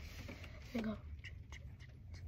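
A girl's voice saying one short word, "go", just under a second in, over a low steady rumble.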